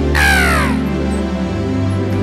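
Live gospel worship music: sustained backing chords and bass hold steady, with a short, bright falling vocal wail just after the start.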